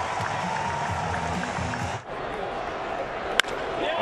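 Ballpark crowd noise, then a single sharp crack of a bat hitting a pitched baseball about three and a half seconds in: the swing that sends a high drive out for a home run.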